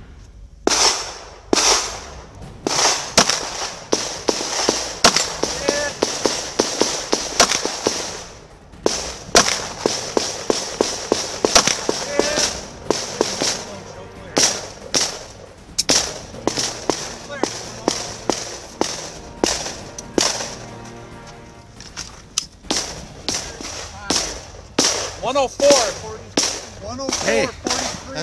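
Handgun fired in fast strings of shots, each a sharp crack with a short echo. There is a short pause about eight seconds in before the firing resumes.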